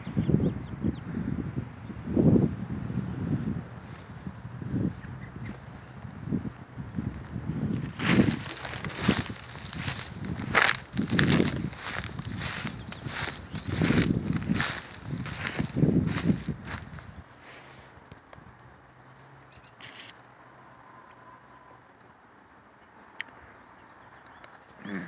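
Footsteps through dry, matted grass and dead stalks: dull thuds at first, then a loud crackling crunch about twice a second for around nine seconds. The steps stop and it goes quieter, with one sharp knock near the end.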